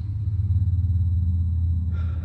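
A steady low rumble with a faint high steady tone above it, and no speech.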